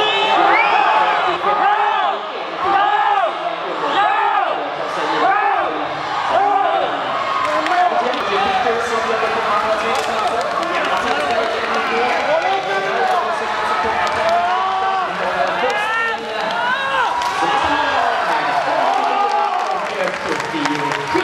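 Spectators shouting and cheering on swimmers during a race, with many voices calling out in repeated rising-and-falling shouts over steady crowd noise.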